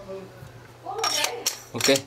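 A short burst of clinking and handling noise about a second in, from a metal-bodied wireless handheld microphone being handled.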